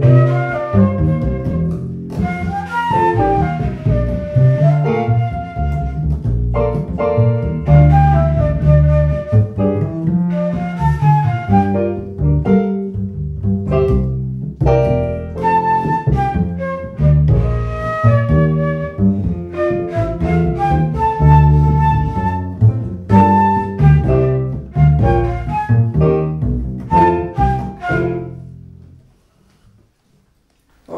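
Live jazz trio: a flute carries the melody over upright double bass and a Roland V-Piano digital piano. The tune comes to its end near the close.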